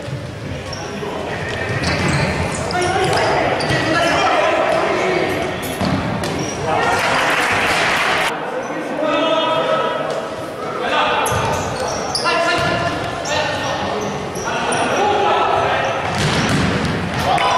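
A futsal ball being kicked and bouncing on a wooden indoor court, with players shouting to each other; the sports hall echoes.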